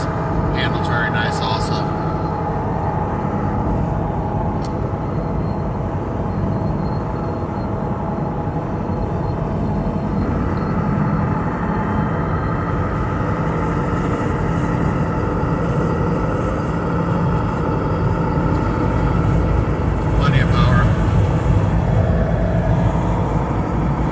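Steady in-cabin drone of a lifted 1996 Toyota Land Cruiser cruising at highway speed: engine hum and tyre rumble, growing a little louder about 20 seconds in.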